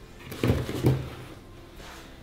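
Two soft knocks of kitchen handling, about half a second apart, with quiet room noise between.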